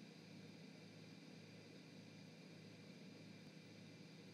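Near silence: a steady faint hiss and hum.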